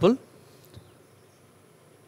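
The end of a man's spoken word, then a faint steady recording hiss with a thin, high-pitched whine running through it.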